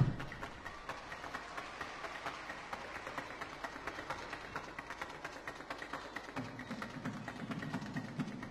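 A thud of a tumbling-pass landing on the sprung gymnastics floor at the very start, followed by scattered audience clapping in a large arena.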